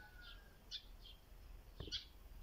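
Faint, scattered short chirps of small birds over quiet background, with a brief faint sound just before the end.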